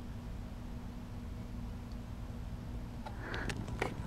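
Quiet room tone with a faint steady electrical hum, and a few faint clicks near the end.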